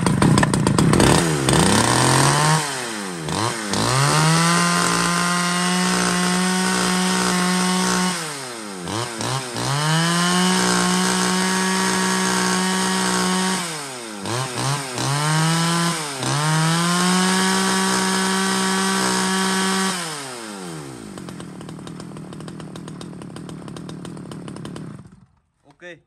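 Stihl 010 two-stroke chainsaw, about 41cc, revved to full throttle three times for a few seconds each, plus one short blip, dropping back between revs. It then falls to idle and cuts off abruptly near the end.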